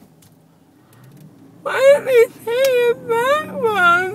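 A woman whimpering in a run of high-pitched, wavering, drawn-out whining cries, starting about a second and a half in, just after having her wisdom teeth pulled.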